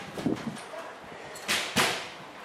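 Players calling out during an Australian rules football match, with two sharp, loud smacks close together about a second and a half in.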